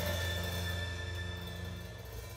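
A live band's final chord held and slowly fading out at the end of a song, with cymbals still ringing and no new drum hits.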